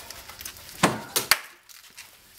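A metal head gasket being pried off a Saab V4 cylinder head, giving three sharp cracks in quick succession about a second in as it breaks loose from the old sealing surface.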